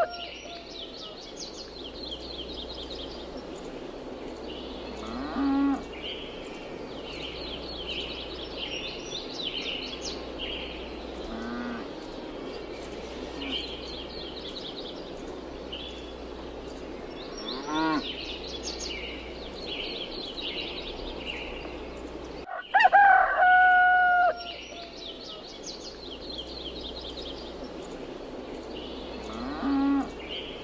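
Farmyard ambience: small birds twittering throughout, a cow mooing a few times, and a rooster crowing loudly about three-quarters of the way through, the loudest sound. The same crow just before the start suggests a looped recording.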